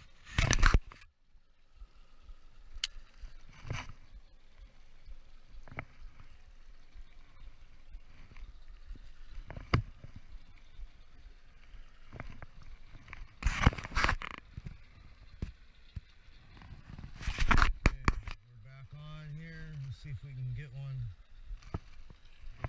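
Handling noise from an action camera being held and moved aboard a small boat: scattered clicks, knocks and rubbing, with three loud, brief bursts of noise on the microphone, the first about half a second in.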